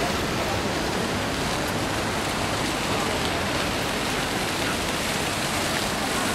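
A fountain's water jets splashing steadily into the basin, a constant rushing hiss.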